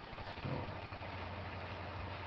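A steady low hum with a faint hiss under it, settling in about half a second in.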